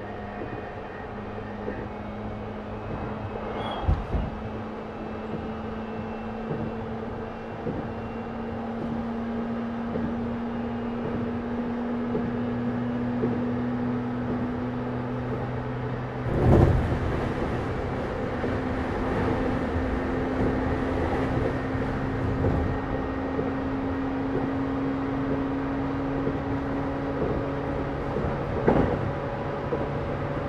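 Cabin sound inside an E131-600 series electric multiple unit motor car running on the line: traction-motor whine whose pitch slowly rises as the train gathers speed, over steady wheel-on-rail noise. A few sharp knocks come from the running gear, about four seconds in, midway, and near the end.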